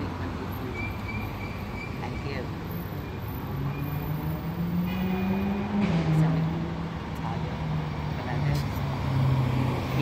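Street traffic: a motor vehicle's engine hum that climbs slowly in pitch, drops about six seconds in, then runs steady.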